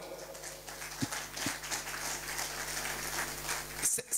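Audience applauding, a dense patter of many hands clapping that stops shortly before the end.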